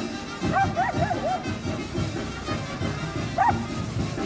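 A dog barking: four quick barks about half a second in and one more near the end, over band music and the fizz of spark-spraying fireworks.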